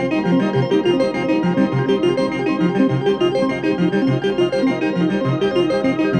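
Electronic music: synthesizers playing a fast, steady pattern of short repeating keyboard notes.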